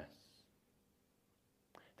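Near silence: room tone in a pause between spoken sentences, with a man's voice trailing off at the start and a faint sound just before speech resumes at the end.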